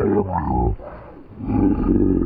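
A man's low, wordless groans of frustration after losing a hooked trout, two of them: one at the start and a second from about a second and a half in.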